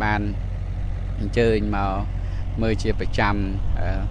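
A loader's engine running steadily as a low drone beneath a man's speech, which comes in three short phrases.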